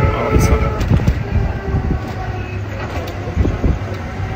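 Low, irregular rumble on a phone microphone outdoors, typical of wind buffeting the mic, with faint voices in the background.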